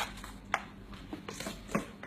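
A few light taps and clicks from a small paper gift box being handled and carried, over a faint steady hum.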